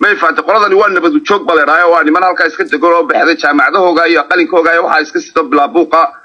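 A man talking without a break.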